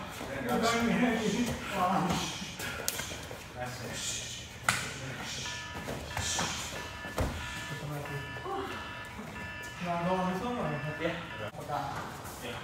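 Background music and indistinct voices, with a few sharp smacks of kicks and punches landing on shin guards and gloves during kickboxing sparring. The loudest is a single sharp smack a little before the middle.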